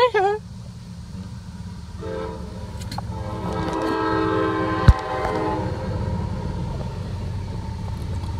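Freight train's locomotive air horn sounding one long, several-toned blast from about two seconds in until past the middle, over the low rumble of the train rolling past. A single sharp knock near the middle.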